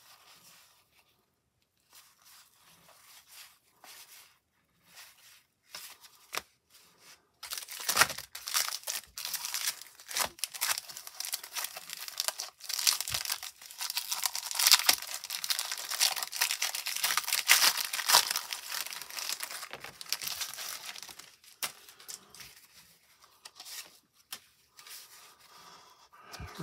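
Cellophane wrapper of a 1990 Topps cello pack being torn open and crinkled: a dense crackling with many sharp clicks from about eight seconds in until about twenty-one seconds. Before and after it, the fainter clicks of cardboard baseball cards being handled.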